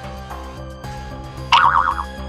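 Background music of steady held notes, then about one and a half seconds in a loud cartoon 'boing' sound effect whose pitch wobbles rapidly up and down.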